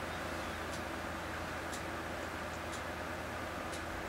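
A few faint, irregular small clicks as a vape cartridge is fitted to a vape pen battery, over a steady low room hum.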